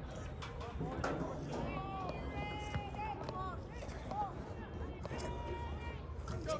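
Distant voices of players and spectators calling out at a youth football game, in short scattered shouts over a steady low rumble.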